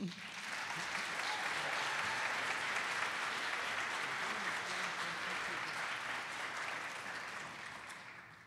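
Audience applauding, swelling over the first second, holding steady, and dying away near the end.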